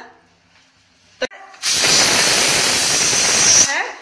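Pressure cooker whistle: after a short click, steam jets out from under the lid's weight in a loud hiss with a shrill edge for about two seconds, then stops. The single whistle means the cooker has reached pressure and the rice is done.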